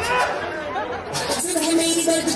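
A voice with strongly gliding pitch over the sound track as the dance music breaks off, then a steady held tone from about halfway through.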